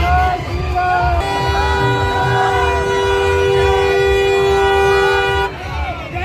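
Car horn held in one long steady blast of about four seconds, two notes sounding together, starting a little over a second in. Men shout in a crowd around it.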